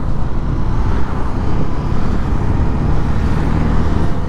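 Wind rushing over the microphone of a camera on a moving motorcycle, mixed with the Honda CB300F's single-cylinder engine running at road speed and tyre noise on wet asphalt.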